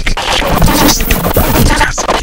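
Noise music: a loud, dense wall of harsh noise spread across the whole pitch range, broken by brief dropouts just after the start and near the end.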